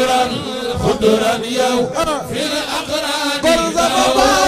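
A group of men chanting an Arabic devotional poem together into microphones, Senegalese Tijani hadara style, with long, wavering held notes.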